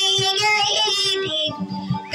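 A woman singing a Maranao dayunday song in a high voice, holding long notes, with acoustic guitar accompaniment; the singing eases off near the end.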